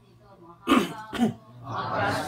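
A person coughing to clear the throat twice, about half a second apart, loud and close to the microphone.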